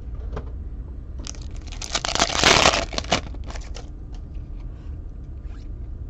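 A foil trading-card pack from a 2020 Topps Chrome hobby case being torn open: one loud tearing burst lasting about a second and a half, then light crinkling and card-handling clicks.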